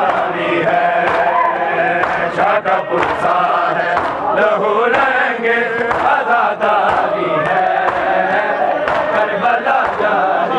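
A group of men chanting a noha, a Shia lament, together in long, drawn-out sung lines.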